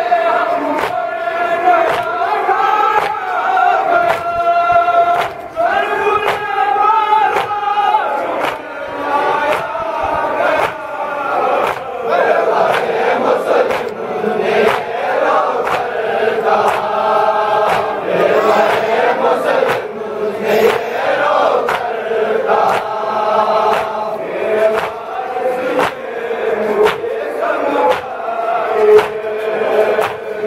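A group of men reciting a Muharram noha in unison, chanted lament in the same melody over and over. It is kept in time by a steady beat of sharp chest-beating (matam) slaps, a little more than one a second.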